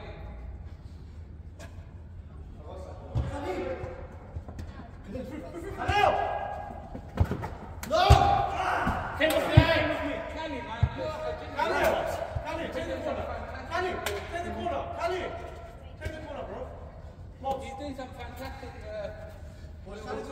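Indoor football game in a large hall: players shout and call to each other, and a handful of sharp thuds of the ball being kicked or striking something ring out, the loudest about eight and nine and a half seconds in.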